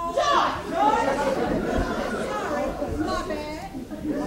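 Only speech: a woman's loud, animated voice with other voices overlapping, louder and higher-pitched near the start.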